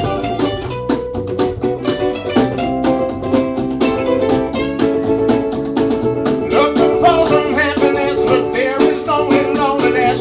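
Live ukulele band: ukuleles strummed in a quick, even rhythm with a guitar. About two-thirds of the way through, a wavering lead melody line comes in over the strumming.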